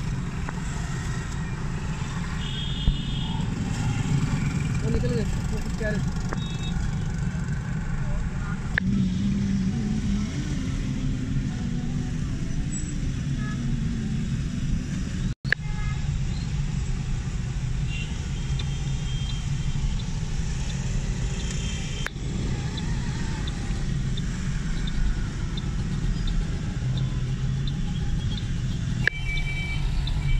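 Busy city street traffic heard from inside a moving car: a steady rumble of engines and tyres from the surrounding cars, motorcycles and auto-rickshaws, with a few short horn toots now and then. The sound cuts out for an instant about halfway.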